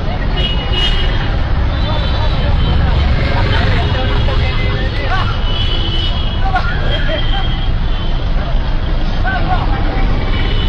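Busy street noise: a steady traffic rumble with scattered voices of people nearby.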